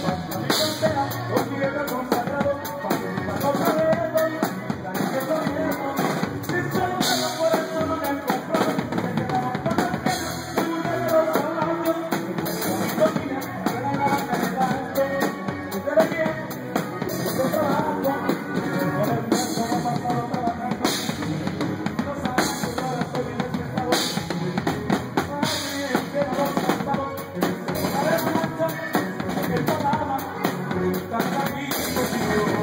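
Live regional Mexican band music, loud and steady, with a drum kit driving it, sousaphone bass and guitar.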